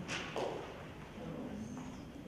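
Two brief thumps about half a second apart near the start, over a low room murmur with faint voices.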